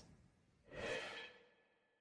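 Near silence, broken about a second in by one brief, soft breathy exhale.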